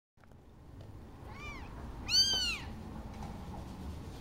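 Newborn kitten mewing twice: a faint, high, rising-and-falling cry about a second and a half in, then a louder, longer one just after two seconds.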